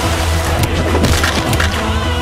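Fight-scene sound effects in a film trailer: a quick series of sharp crashing hits layered over a loud music score with a heavy bass.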